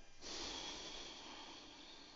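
A person's long, breathy exhale, strongest at first and fading over about a second and a half: an audible breath held in a yoga pose.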